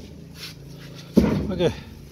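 Mostly quiet handling noise, then a man's voice about a second in, a strained two-syllable "okay" with falling pitch, spoken while straining to lift a very heavy potted banana plant.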